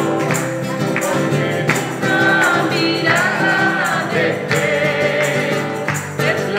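A woman singing a praise song while strumming a nylon-string classical guitar in a steady rhythm.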